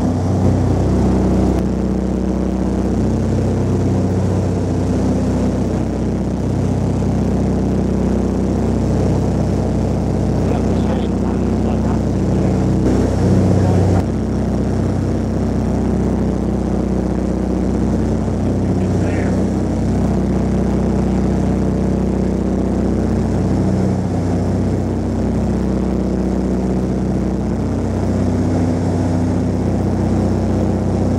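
Twin-engined de Havilland Dragon Rapide biplane in flight, heard from inside the cabin: the steady drone of its six-cylinder Gipsy piston engines and propellers, with an abrupt jump in the sound about halfway through.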